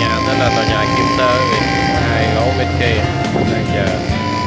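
Music with a singing voice over a held high note.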